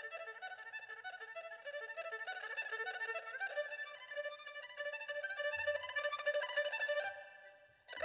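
Flat-octagonal gaohu, a high-pitched Chinese two-string bowed fiddle, playing an unaccompanied solo passage of quick running notes high in its range. The line thins out and fades away about a second before the end.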